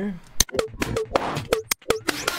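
Percussion loop run through Zynaptiq Pitchmap tuned to D natural minor: sharp drum hits, each followed by a short pitched ring, so the loop resonates into little almost-chords.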